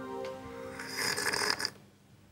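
The last notes of a guitar music cue ring on and fade out, then a short breathy slurp comes about a second in as hot tea is sipped from a glass.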